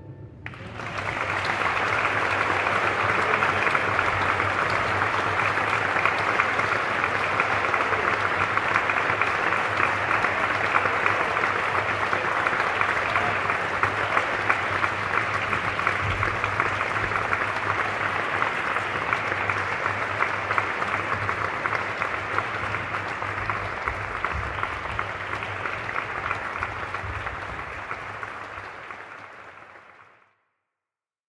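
Audience applauding, starting within the first second and holding steady, thinning slightly near the end before it cuts off.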